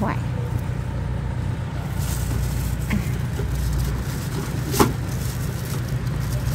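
Steady low rumble of a motor vehicle engine close by. A single sharp knock comes about five seconds in.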